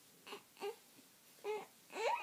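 Young baby fussing with a few brief, soft whimpering cries.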